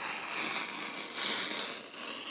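Rotary cutter blade rolling through fabric along the edge of a clear plastic ruler on a cutting mat: a steady rasping cut lasting a few seconds.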